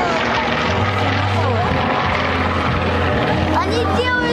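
Yak-52 aerobatic planes overhead, their M-14P nine-cylinder radial engines and propellers droning steadily. The low drone grows stronger about a second in.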